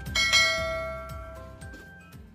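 A bell chime sound effect struck once and ringing out, fading over about a second and a half, played as the subscribe button's bell icon is clicked. Background music fades underneath.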